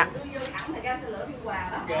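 People talking in background conversation, with no other distinct sound standing out.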